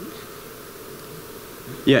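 Steady low background hum of a hall's room tone. About two seconds in, a man's voice comes in over the microphone with "yeah".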